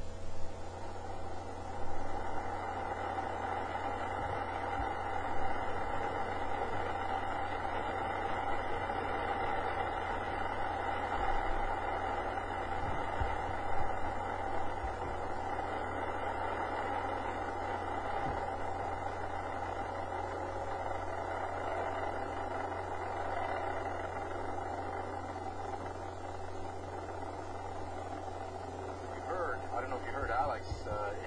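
Steady rushing roar of an Ariane 5 rocket at liftoff and early climb, its Vulcain main engine and two solid boosters firing, heard through the launch broadcast feed. The roar fades slightly toward the end.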